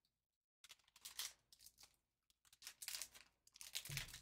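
A foil wrapper being crinkled and torn open by gloved hands: irregular crackling that starts about half a second in.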